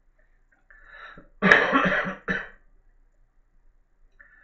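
A man coughing: a soft throat-clearing about a second in, then one loud cough followed by a short second one. He says he is unwell and can't get warm.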